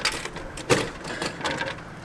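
Several sharp knocks and clatters from a plastic drink bottle and the hinged flap of a vending machine's dispensing slot, as a bottle stuck in the slot is worked loose and pulled out. The loudest knock comes just under a second in.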